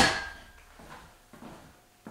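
A metal clank as a steel weight bar is set down, ringing away within about half a second, followed by a few faint soft knocks.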